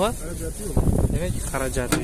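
People talking, with a steady low outdoor rumble of wind and background noise underneath.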